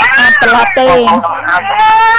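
A woman talking in Khmer with an expressive voice that glides up and down in drawn-out syllables.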